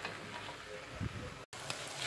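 Sliced mushrooms with onion and carrot frying in a little oil in a pot, a faint sizzling hiss, stirred with a silicone spatula. There is a soft knock about a second in and a momentary break in the sound a little past halfway.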